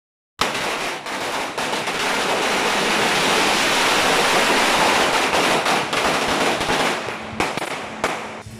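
Firecrackers going off in a loud, dense, continuous crackle of rapid bangs. It starts abruptly about half a second in and stops suddenly near the end, leaving a few scattered pops.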